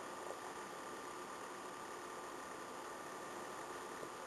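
Faint steady hiss of room tone with a light, steady hum under it, and a small click just after the start.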